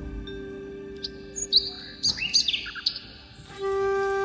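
Soft background music of long held notes, with a few quick bird chirps over it in the middle; near the end a brighter, flute-like held chord comes in and gets louder.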